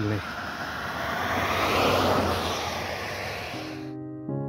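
A passing vehicle: a rushing engine noise that swells to its loudest about two seconds in, then fades. Music starts near the end.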